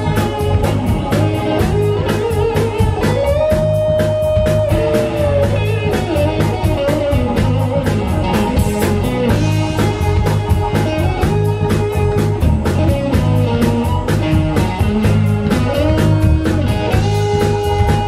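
Live blues band playing an instrumental groove: electric guitar, electric bass, drum kit and keyboards, with a lead line of held notes that bend up and down in pitch over a steady drum beat.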